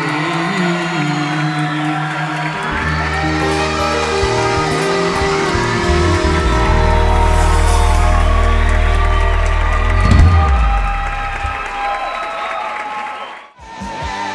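Live pop-ballad band playing the closing bars of a song: held keyboard chords over deep bass notes that swell to a final loud chord about ten seconds in, then die away and cut off abruptly near the end.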